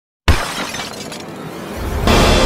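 Glass shattering: a sudden crash about a quarter second in, with a tinkling tail that fades over about a second and a half, as intro music swells in near the end.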